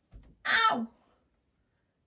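A woman cries out "ow" in pain, one short loud cry about half a second in whose pitch falls away: she has just stubbed her toe.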